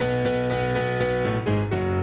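A rock band comes in suddenly, playing held keyboard chords over bass, with a few chord changes.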